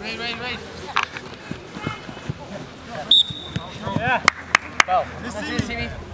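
Voices of players and spectators calling out across a soccer field. About three seconds in comes a short high whistle, and a little later three sharp knocks a quarter second apart.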